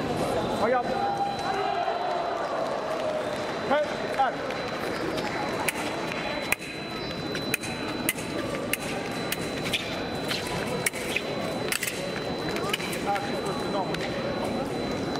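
A men's foil exchange on a metal piste: a run of sharp, quick clicks and taps from the blades and the fencers' feet, spread over several seconds in the middle, over the hum of voices in a large hall.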